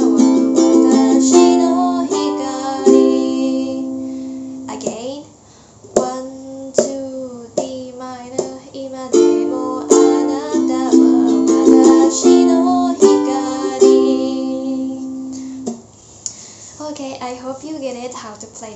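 Ukulele strummed through the chord progression D minor, A minor, F, G, C, with a woman singing along. The phrase is played twice, with a brief gap about five seconds in; the strumming stops near the end and she starts talking.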